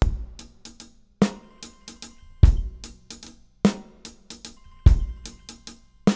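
Multi-miked drum kit recording playing back: a steady beat with a strong hit about every 1.2 seconds and lighter cymbal and hi-hat strokes between them.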